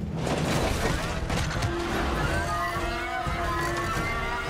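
Action film soundtrack mix: music over a steady rumble of vehicle and action effects, with held notes and a slowly rising line coming in about two seconds in.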